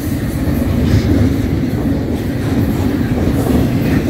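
Double-stack intermodal freight train rolling past close by: the container well cars make a loud, steady, low rolling rumble on the rails.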